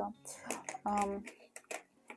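A short murmured syllable, then a few faint light clicks as wooden pastel pencils are handled and one is picked out of the pencil tray.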